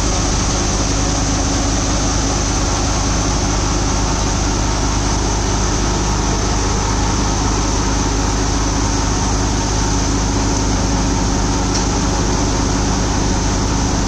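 Tractor-driven Deepak Uchana multicrop thresher running steadily under load as crop stalks are fed into its hopper, together with the tractor engine powering it: a loud, even mechanical noise with a constant hum that does not change.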